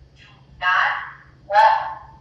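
A person's voice in two short bursts, about half a second each, the words not made out.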